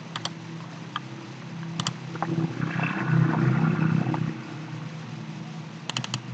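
Computer mouse clicks, each a quick pair of ticks, near the start, about two seconds in and at the end, over a steady low hum. In the middle a louder rushing noise swells and fades over about two seconds.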